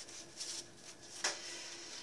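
Soft paper rustling and brushing from handling a junk journal's paper pages, envelope pocket and tag, with a sharper crisp paper sound about a second and a quarter in.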